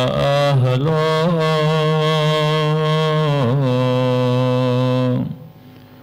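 A man's voice chanting a recitation through a microphone in long, held notes with slight pitch wavers, stopping about five seconds in for a pause.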